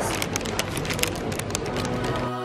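Paper bakery bag crinkling and rustling as it is handled and opened: a dense, irregular run of crackles.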